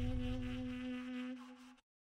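Closing jazz music: a final held saxophone note over a low bass rumble, fading down and cutting off suddenly just before the end.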